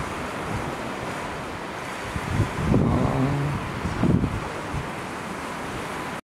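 Wind buffeting the microphone over the steady wash of Baltic Sea surf, gusting louder about three and four seconds in, with a brief low hum near the middle.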